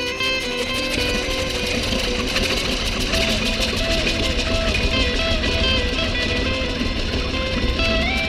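Live rock band playing an instrumental jam: quick stepped guitar and keyboard lines over bass and a busy drum beat, continuing without a break.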